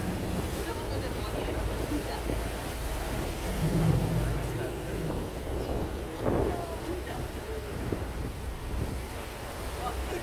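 Wind buffeting the microphone on an open boat at sea, a steady low rumble, with faint voices now and then.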